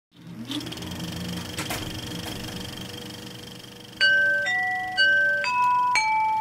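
A faint hum and hiss with a few crackles, then about four seconds in a run of four clear chime notes about half a second apart, the first and third on the same pitch, sounding as the opening signal of a radio-theatre broadcast.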